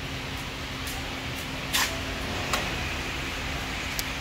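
A few light clicks, the loudest just under two seconds in, as the hood of a 2022 Toyota Hilux is unlatched and lifted open, over a steady background hum.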